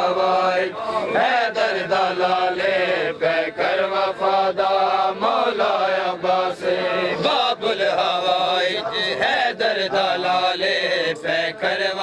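Male voices chanting an Urdu noha (mourning lament) in a steady cadence. A crowd of men beats their chests (matam) in time, with sharp hand slaps about twice a second.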